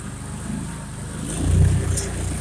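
Argo amphibious off-road vehicle's engine running under way, swelling louder for a moment about a second and a half in as it is given throttle, with a sharp click near the end.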